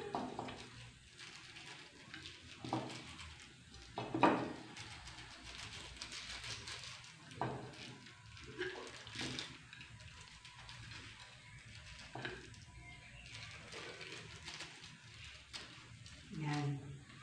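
Faint handling sounds of hands rubbing salt and pepper into a raw duck on a plate, with a few scattered light knocks, the loudest about four seconds in.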